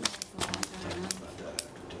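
Sheets of paper handled on a table: a few short, sharp clicks and rustles, over a faint murmuring voice.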